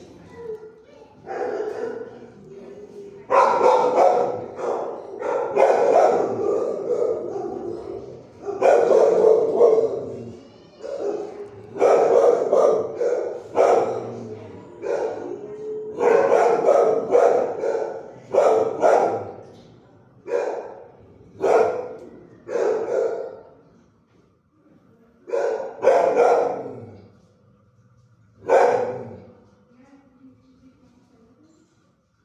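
Dogs barking over and over in a shelter kennel, each bark echoing off the hard walls and steel runs. The barks come in irregular bunches and thin out to a few isolated ones near the end.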